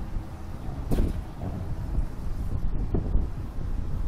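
Wind rumbling over the microphone on a swaying slingshot ride capsule, with a couple of short knocks or sounds about one second and three seconds in.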